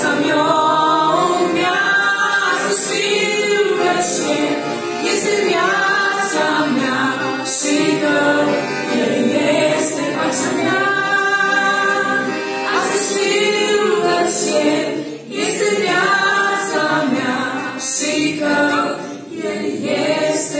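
Three women singing a Romanian hymn in close harmony, with an accordion accompanying them. The phrases are sustained, with brief breaths between lines.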